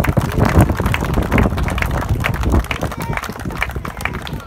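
A small crowd applauding, many hands clapping at once.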